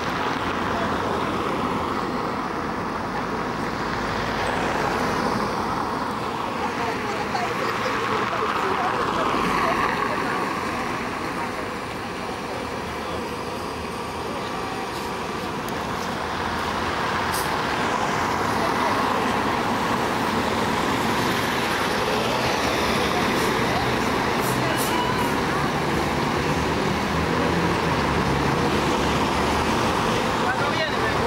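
Steady road traffic noise on a city street, with vehicles passing close by and people talking in the background.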